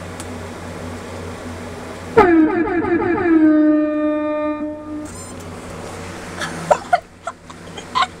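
A loud horn blast about two seconds in: its pitch wavers and drops at first, then holds one steady note for about three seconds before cutting off, over a steady low hum. A few sharp knocks follow near the end.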